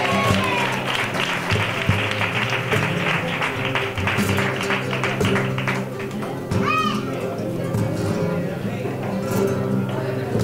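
Flamenco music: a Spanish guitar and voices hold steady low notes while hand clapping (palmas) keeps a quick rhythm for the first six seconds or so. A single short sung cry comes about seven seconds in.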